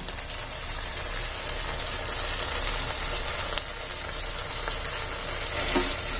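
Onion-and-spice masala paste sizzling in oil in a non-stick wok as it is sautéed down, with a silicone spatula stirring through it; a steady sizzle with a few faint ticks.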